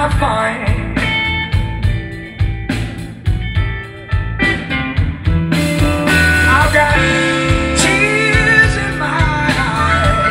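Electric blues band playing live: singing over electric guitar, electric bass and drums. The voice sings briefly at the start, drops out for a few seconds while the guitar carries on, and comes back in the second half.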